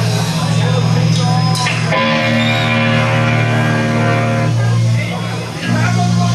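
Crossover thrash band playing live: loud distorted electric guitar and bass over drums, with a chord held ringing for a couple of seconds in the middle and a brief drop in loudness near the end.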